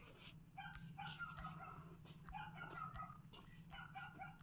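Faint, repeated short high-pitched animal calls over a low steady hum.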